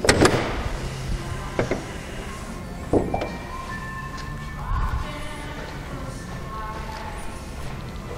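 Background music, with a few dull thumps and knocks from someone climbing out of a car with the door open. The loudest knock comes right at the start, a smaller one about a second and a half in, and another about three seconds in.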